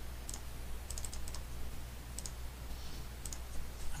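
A few scattered clicks of computer keys and mouse buttons while code is copied, pasted and typed, some single and some in quick little runs, over a low steady hum.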